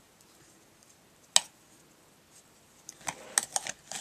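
Light handling of a plastic spoon in a plastic container of fine glitter: one sharp click about a second and a half in, then a run of small clicks and rustles near the end.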